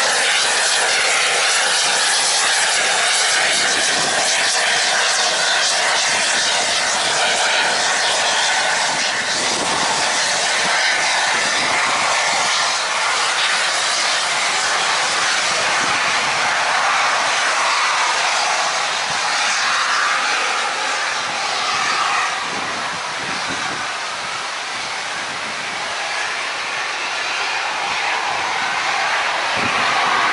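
A blue streamlined A4-class steam locomotive working past with its train of coaches, the exhaust and running noise mixed into a steady rush of wind. The sound eases a little after about twenty-two seconds as the last coaches go by.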